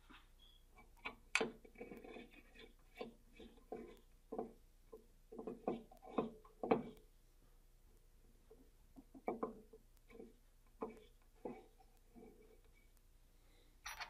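Faint, irregular small clicks and scrapes of screws being turned in by hand on a 6061 aluminium CNC toolhead mounted in a Dillon 550B press. They come in two bursts with a short pause between.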